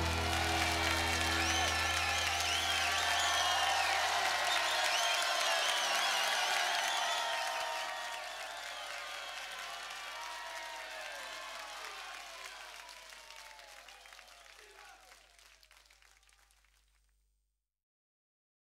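Applause and cheering with whistles, fading out slowly over a low held bass note at the close of a pop song, until silence about 17 seconds in.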